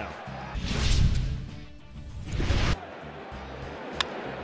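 A short music-and-effects transition stinger: a deep booming swell with two swishes, which cuts off abruptly about two and a half seconds in.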